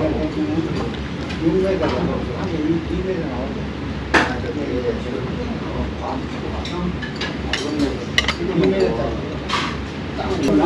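Metal cutlery clinking against a ceramic plate a few times while eating, the sharpest click about four seconds in, with indistinct voices talking in the background.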